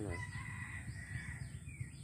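A rooster crowing faintly: one long held note that drops in pitch at the end.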